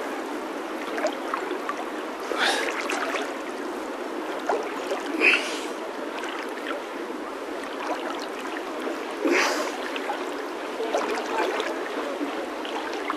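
River water sloshing and lapping close around a camera held at the surface by a swimmer. Louder splashes come about 2.5, 5 and 9.5 seconds in.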